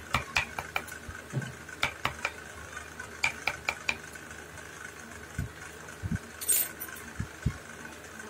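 Wood-carving chisel struck with a wooden block mallet, cutting into a carved wooden dome: a run of sharp, irregular taps, some in quick clusters of two or three, with a few duller, lower knocks in the second half.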